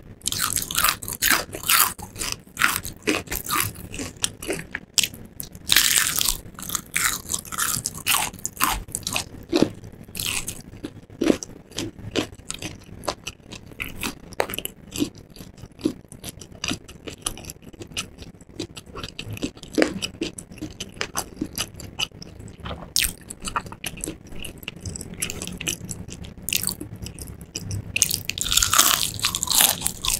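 Close-miked chewing of crispy fried chicken, the battered coating crunching between the teeth. Crunches are dense and loud at first, then give way to sparser, softer chewing, and a new run of loud crunches comes near the end as another bite is taken.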